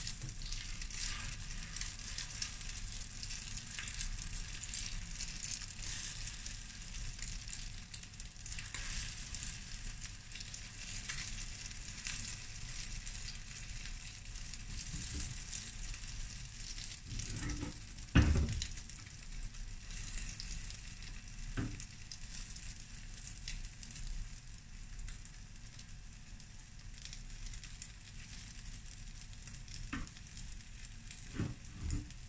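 Egg omelette sizzling steadily on a flat griddle pan (tawa), with a few knocks and scrapes of a spatula against the pan; the loudest knock comes just past the middle.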